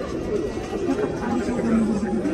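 Indistinct chatter of people talking, with no words that can be made out.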